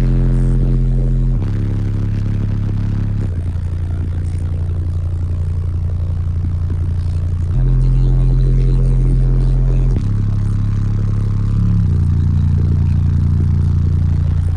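Three 18-inch subwoofers walled into a small car, playing a song's held bass notes very loud, heard from inside the cabin. The notes change pitch every few seconds, with a buzzing rattle on top.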